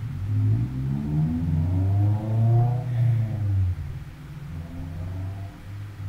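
A motor vehicle engine revving up: its low note climbs steadily for about three seconds, then settles into steady running.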